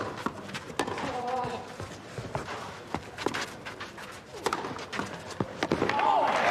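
Tennis rally on a clay court: the ball struck back and forth by the rackets, a sharp pop about once a second, with a brief voice sound between the strikes.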